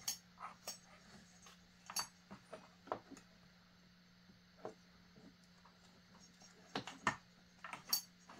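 Sparse, light metallic clicks and taps as a partly stripped chainsaw's corroded bottom end is handled and turned by hand, over a faint steady hum.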